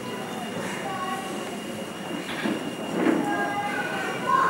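Indistinct voices talking in a reverberant hall, over a steady background hiss with a faint high steady tone.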